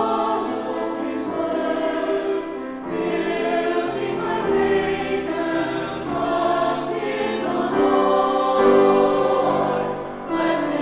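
A small mixed choir of about eight voices singing together with grand piano accompaniment, in sustained, legato phrases.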